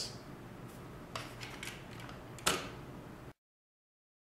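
Two sharp mechanical clicks over faint room tone, a small one about a second in and a louder one about two and a half seconds in, before the sound cuts off abruptly.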